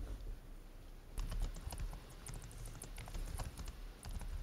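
Typing on a computer keyboard: a run of light, irregular key clicks starting about a second in, over a low steady hum.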